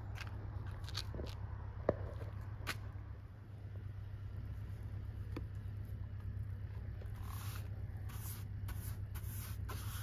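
Paintbrush strokes swishing clear sealer onto bare cedar boards, a run of short repeated brushing sounds starting about seven seconds in, over a steady low rumble.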